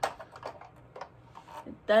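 A few light clicks and taps from a toy DeLorean car model being handled, most of them in the first second.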